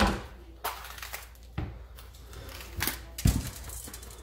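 Chef's knife cutting through a green bell pepper and knocking on a plastic cutting board: about six sharp, uneven knocks, the loudest near the end.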